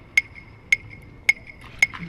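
Clicking measuring rods from a dance performance: sharp, evenly spaced clicks, each with a brief high ring, about two a second, four in all.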